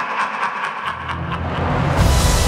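A deep, low rumble swells in about a second in and builds to a loud, bright hit at the end, a cinematic sound-effect riser leading into theme music. The first moment holds the fading tail of a rhythmic cackling laugh.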